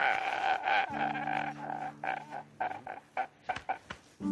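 A man laughing hard in rapid, repeated pulses that grow fainter and more broken toward the end, with a steady low tone underneath for a while.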